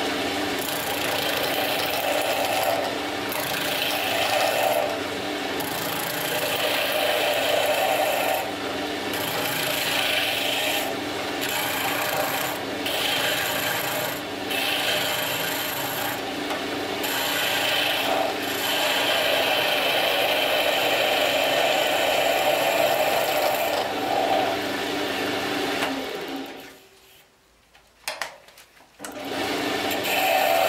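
Wood lathe spinning a small spindle while a skew chisel cuts along it, a rasping cutting noise that swells and fades every second or two over the motor's steady hum. Near the end the sound drops almost to nothing for about two seconds, broken by a few short knocks.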